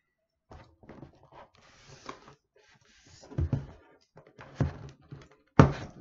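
Cardboard courier box being opened by hand: scratching, tearing and rustling of tape and cardboard, broken by a few dull knocks as the box is handled, the loudest near the end.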